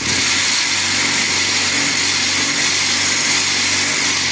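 Vibrator motor on a mobile cinder-block machine running, shaking the steel mould full of concrete mix to compact the blocks: a loud, steady buzzing rattle over a low hum that switches on abruptly.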